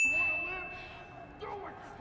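A single bright bell ding that starts suddenly and rings on one high tone, fading away after about a second and a half: the sound effect marking a sin added to the on-screen sin counter.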